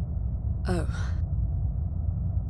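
Steady low rumbling drone of an aircraft cabin in flight, under a woman's short, breathy, falling 'Oh' about two-thirds of a second in.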